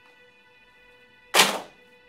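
A single sharp thunk about a second and a half in, dying away quickly: a picture frame set down flat on a shelf.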